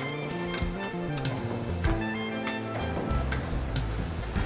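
Background music with held notes changing every half second or so.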